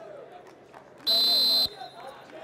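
A referee's whistle blown once: a single shrill blast of about half a second that starts and stops abruptly.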